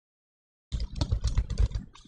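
Computer keyboard typing: a quick run of keystrokes that starts abruptly from dead silence under a second in, each stroke a sharp click with a dull knock.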